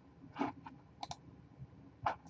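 Computer mouse clicks: a few short, separate clicks, the loudest under half a second in and a quick double click about a second in.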